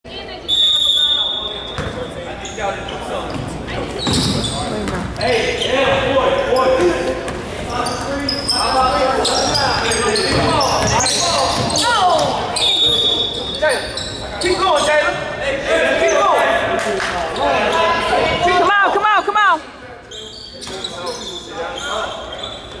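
Basketball game sounds echoing in a gym: the ball bouncing on the hardwood, sneakers squeaking, and players and spectators calling out. A run of short sneaker squeaks comes near the end.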